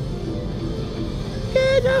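Casino floor din: slot and keno machines playing their electronic music over a steady crowd-and-machine hum, with a short held tone near the end.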